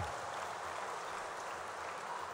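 Steady applause from an audience in a large hall, quieter than the speech around it.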